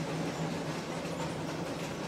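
EMD GP7 diesel locomotive and its passenger cars crossing a steel truss bridge. The engine and wheels make a steady running noise with a faint low hum.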